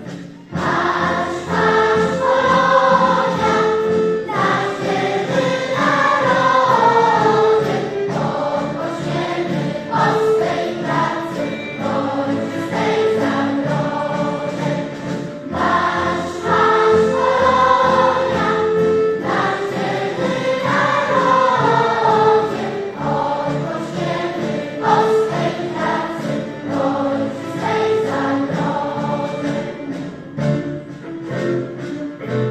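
Large mixed choir of children and adults singing together in harmony, with a brief break between phrases just after the start and another around the middle.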